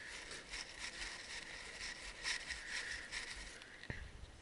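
Faint lapping and splashing of lagoon water, with light irregular patter and a low hiss.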